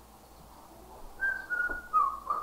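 A person whistling, starting about a second in: a clear high note that steps down through two lower notes.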